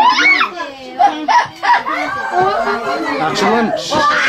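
Several women and children talking over one another in lively, overlapping chatter.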